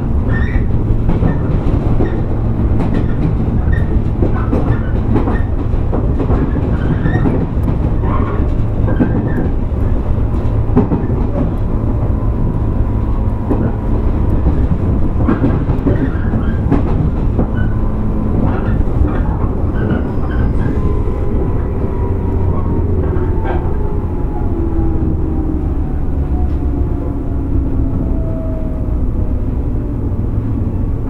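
JR 115 series electric multiple unit rumbling along the track, with rail-joint clicks scattered throughout. About two-thirds of the way in, the motor and gear whine falls steadily in pitch as the train slows.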